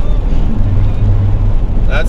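Road noise inside the cab of a moving motorhome: a steady rumble of engine and tyres, with a low drone that holds for about a second in the middle.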